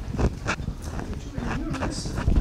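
A distant, indistinct voice from the audience asking a question off-microphone, in a reverberant lecture hall, with a few soft knocks.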